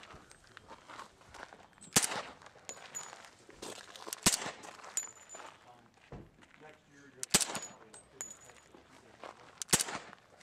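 Four suppressed .45 ACP pistol shots from an H&K USP45 Tactical fitted with a Gemtech Blackslide 45 suppressor. Each is a single sharp crack, spaced about two to three seconds apart, and they are super quiet for a .45.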